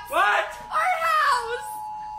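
A recorded song playing from a music app: a voice singing in gliding phrases during the first part, over a steady held high tone.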